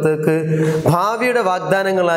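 A man's voice talking continuously, lecturing in Malayalam to a class.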